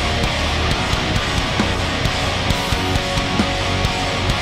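Live metalcore band playing at full volume: distorted electric guitars, bass guitar and drums in a dense, steady wall of sound.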